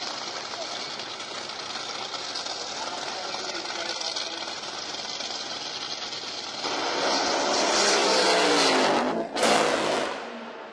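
Top Fuel dragster's supercharged nitromethane V8 running loud and rough at the start line, then launching with a sharp rise in loudness about seven seconds in. Its note falls in pitch as the car runs away down the track, and a short, loud burst comes near the end.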